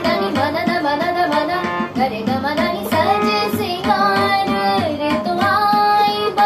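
A girl singing while accompanying herself on a harmonium, the reeds sounding steady held notes beneath her voice.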